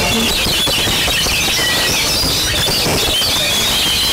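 Oriental magpie-robin singing, a run of quick high whistles and warbles among other birds, over a steady loud background din.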